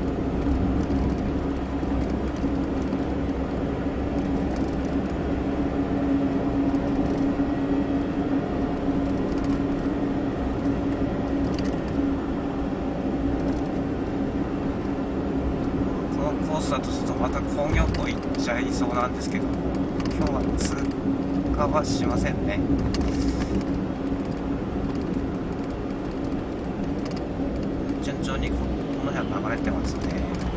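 Road noise inside a moving car's cabin: steady engine and tyre drone with a constant low hum.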